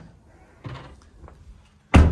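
The tailgate of a Mini Countryman slammed shut once near the end: a single sharp, loud thud with a short ring after it. Before it there is only faint handling noise.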